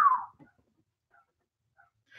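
A man's short whistle, one note that slides up and then falls away, trailing off within the first half second, followed by silence.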